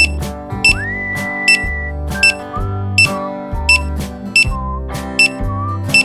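Upbeat background music with a steady bass beat, a short high ringing note on every beat, and a melody that slides up about a second in.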